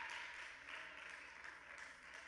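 Faint, steady applause from a congregation during a pause in the sermon.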